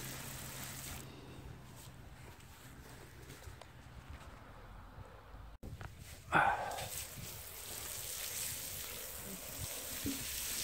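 Water spraying from a garden hose nozzle onto loose soil in a planting hole, settling the backfill around a newly planted tree's roots; the spray is faint through the middle and builds again in the last few seconds. A short, sharp, loud sound stands out a little past the middle.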